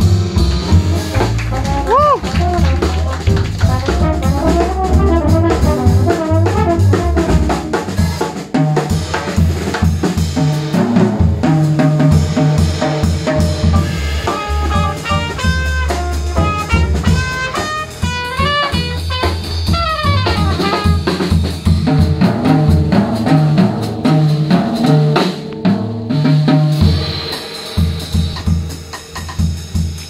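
A live jazz combo playing: plucked double bass and drum kit with cymbals, joined by trumpet phrases in the middle stretch.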